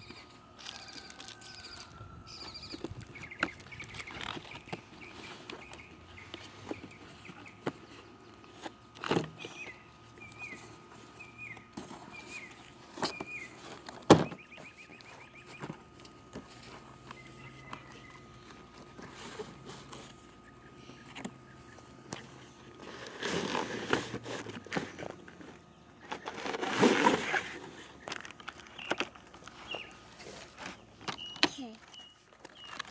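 Cardboard toy box handled and opened by hand, with scattered knocks and clicks, the sharpest about halfway through, and louder rustling of plastic packaging near the end. A bird gives a quick series of short chirps in the background.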